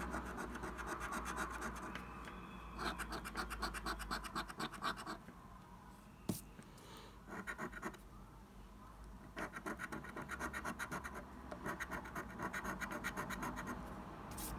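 A coin scratching the latex coating off a paper scratch card in quick back-and-forth strokes. It comes in several bursts broken by short pauses, with a single sharp click in one pause.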